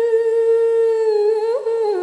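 A woman's voice singing one long held note of a slow Khmer song, with a quick upward turn near the end that falls to a lower held note.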